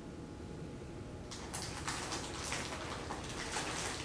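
Crinkling of a plastic snack wrapper being handled, an irregular crackle that starts about a second in and keeps going.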